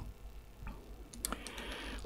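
A few faint, sharp clicks in a pause, one about a second in and a quick cluster just after, over a steady low hum from the sound system.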